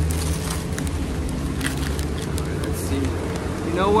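Brown paper wrapping crinkling in short, scattered crackles as a parcel is cut open with a knife, over a steady low rumble of road traffic.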